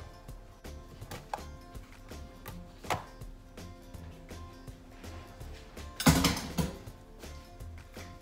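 Silicone spatula stirring thick batter and knocking against the side of a mixing bowl, with a few light taps and a louder clatter about six seconds in.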